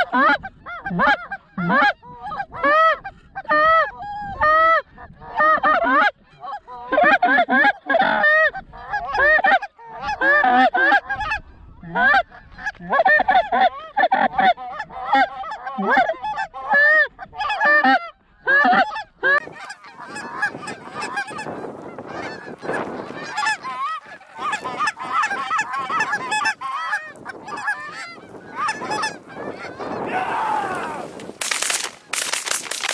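Rapid Canada goose honks and clucks, several a second, loud and close for most of the first two-thirds. About two-thirds of the way in they thin into a denser, softer chorus of many geese honking together as a flock approaches.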